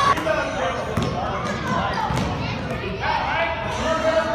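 A basketball bouncing a few times on a gym floor, amid children's voices and shouts echoing in a large hall.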